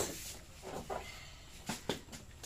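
A quiet lull with two light, sharp clicks in quick succession near the end, typical of a utensil tapping a plate or a knife tapping a cutting board.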